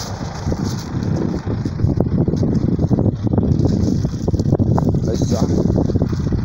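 Wind buffeting the phone's microphone: a loud, steady, low rumble with irregular gusty crackle.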